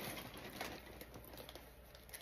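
Faint rustling and small scattered clicks of packaging being handled while someone rummages for an item.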